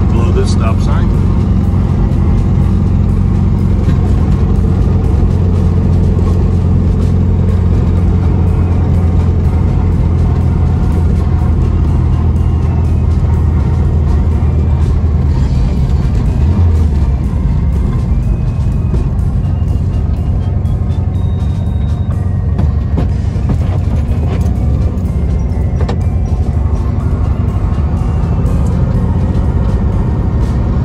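Background music with a singing voice over a classic VW Beetle's air-cooled flat-four engine running as the car drives along steadily.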